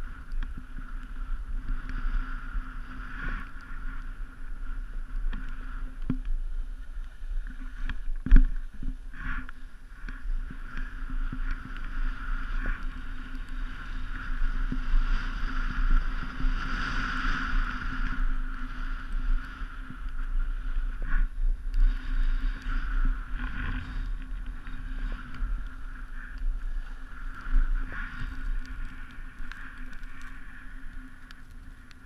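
Steady rush of wind over the camera's microphone and edges scraping over groomed snow on a downhill run, with a sharp knock about eight seconds in and a brief swell in the rush around the middle.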